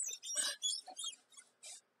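Upholstered armchair squeaking: a few short, high squeaks as the person sitting in it shifts his weight.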